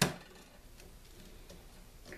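A single sharp metallic click as the steel planer blade is set into the sharpener's magnetic holder, followed by faint handling sounds.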